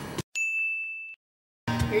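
A single high-pitched ding sound effect, one steady tone with a sharp start, held just under a second and cutting off abruptly. The background music drops out completely around it.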